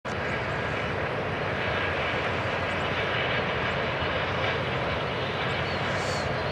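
Steady drone of a powered paraglider's paramotor engine and propeller in flight.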